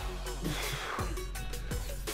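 Background music with a steady beat.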